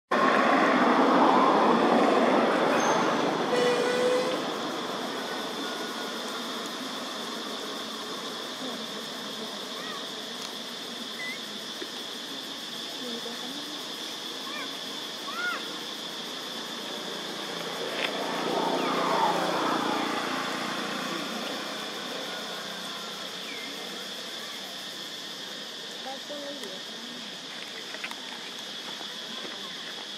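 Outdoor ambience with a steady high-pitched drone throughout. A vehicle passes at the start and another about eighteen seconds in, each swelling and fading. Faint short chirps come now and then in between.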